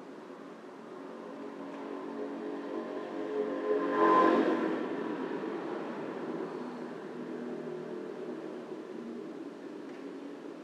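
Soft, sustained electric keyboard music, slow held notes. It swells to a louder peak about four seconds in and then settles back.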